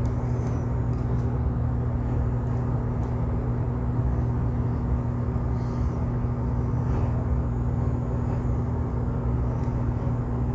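Steady low background hum that does not change, with a few faint small clicks from fingers handling the small metal parts of the compressor's pump assembly.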